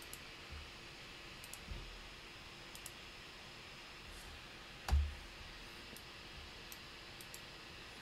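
Scattered faint computer clicks over a quiet room hiss, with one louder click and a low thump about five seconds in.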